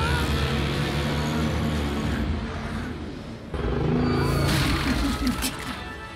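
A giant monster's roar sound effect from an animated action scene, deep and rumbling, over dramatic score music, dipping briefly about three and a half seconds in before the action sound swells again.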